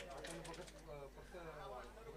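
Faint, distant voices in the background, low under the quiet ground ambience.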